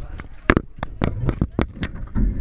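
Irregular sharp clicks and knocks, the loudest about half a second in, as climbing hardware and fabric rub and knock against a harness-mounted camera while the bungee jumper is handled at the platform.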